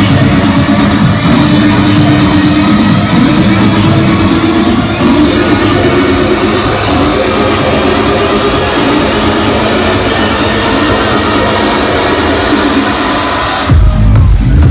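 Loud electronic dance music from a club sound system, recorded on a phone in the crowd during a live DJ set. A sustained, bright high-pitched build runs over the track and cuts off just before the end, as heavy bass drops in.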